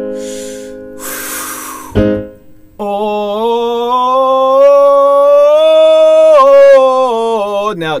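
Electric keyboard chord held and fading, then a hard breath out, then a man singing a long 'oh' vowel in chest voice that steps up a few notes of a scale and back down. This is a support exercise, sung bent over after exhaling the air so the tone comes from the belly rather than the throat.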